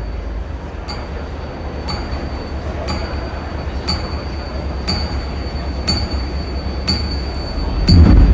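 Countdown sound effect over a venue's PA system. A short, high tick-beep sounds once a second, about eight in all, over a steady low drone, and a deep, loud hit comes in at the very end.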